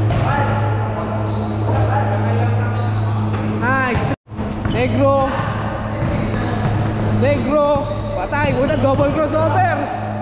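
A basketball dribbling and bouncing on an indoor court, with players' voices, over a steady low hum. The sound drops out for a moment about four seconds in.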